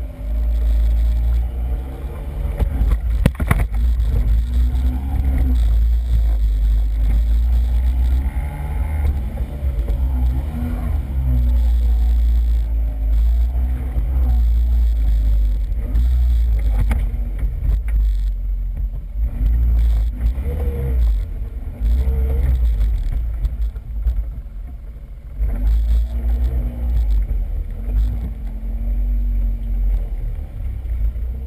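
ATV engine running, its pitch rising and falling as the throttle is worked over rough ground, under a heavy low rumble of wind and jolts on the microphone. A sharp knock sounds a few seconds in.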